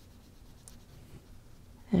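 Faint strokes of a paintbrush on sketchbook paper.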